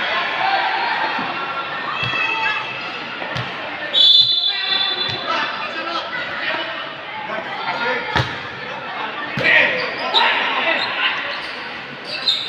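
Volleyball match sounds in a large echoing sports hall: a crowd chatters and calls out throughout, and a referee's whistle gives one short blast about four seconds in. A volleyball is hit or bounced several times in sharp single thuds, the loudest a little past eight seconds.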